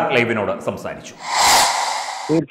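A man speaking for about a second, then a loud rushing hiss lasting about a second near the end.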